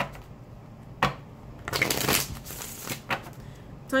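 A deck of tarot cards being shuffled by hand, in several short bursts, the sharpest about a second in.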